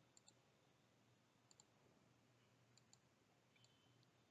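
Near silence broken by a few faint computer mouse clicks, each a quick double click, about four times.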